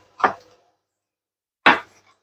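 Chef's knife striking a wooden cutting board while chopping fresh rosemary: two short sharp knocks about a second and a half apart.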